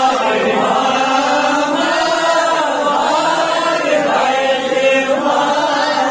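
A man chanting in long, drawn-out notes that rise and fall, amplified through a microphone.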